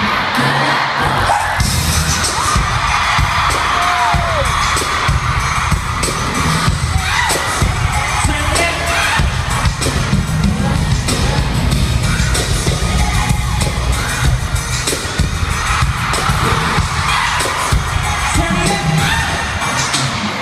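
Live concert music heard from within the arena crowd: a loud, bass-heavy dance beat from the PA with sharp percussive hits, while fans scream and cheer over it throughout.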